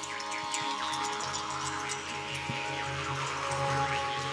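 Traditional Yakut music: a group of khomus jaw harps twanging and droning together over bowed Yakut fiddles. Sweeping overtone glides fall away and rise again near the end.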